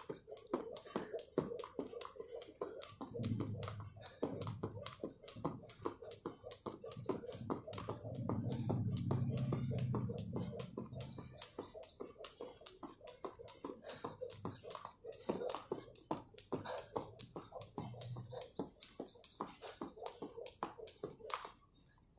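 Plastic skipping rope slapping the paved ground on each turn: a quick, even run of sharp ticks that stops shortly before the end.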